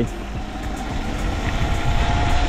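Sur Ron electric dirt bike riding along a rough dirt track: wind rush on the microphone and tyre rumble, with a faint steady electric-motor whine coming in about halfway through.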